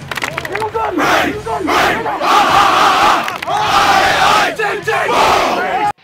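A football team yelling together in a huddle: a few short group shouts, then two long, loud shouts in unison in the middle.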